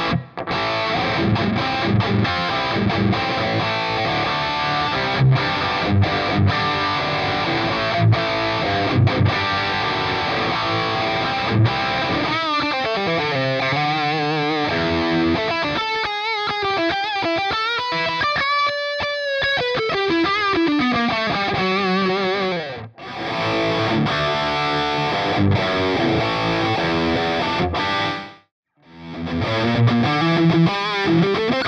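Distorted electric guitar (a Suhr Classic) played through a Kemper preamp into a Soldano 4x12 cabinet impulse response with English-made Celestion Vintage 30 speakers. It plays fast riffing, then a held lead note bent up and back down with vibrato, then riffing again with two brief stops.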